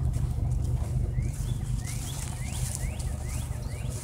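A bird calling, a run of about six quick rising chirps about a second in through near the end, over a steady low rumble.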